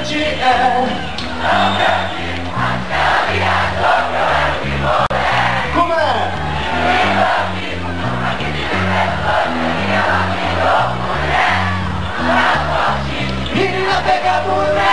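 Rock band playing live at full volume, with a moving bass line, and a crowd shouting and singing along.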